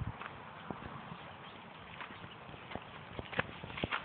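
Footsteps walking through a grassy meadow: irregular soft steps and rustles of grass, with a few sharper clicks near the end.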